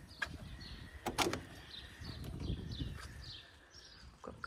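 An aluminium-framed glass door being opened: two sharp clicks of the lever handle and latch about a second apart, with faint birds chirping in the background.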